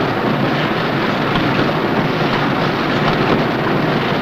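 Light-bulb production machinery running, a steady dense mechanical noise with faint scattered ticks.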